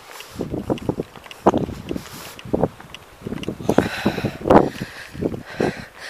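Wind buffeting the camera's microphone in irregular gusts, with footsteps on a gravel track.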